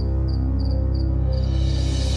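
Film score holding a sustained low drone, with cricket chirps repeating about three times a second over it. The chirps stop about one and a half seconds in, and a high hiss then swells up.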